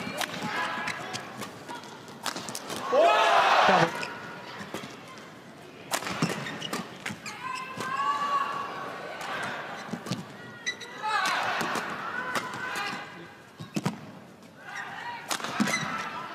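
A badminton doubles rally: rackets crack against the shuttlecock again and again at an uneven pace, with short high squeaks from the players' shoes on the court. The loudest squeak comes about three seconds in.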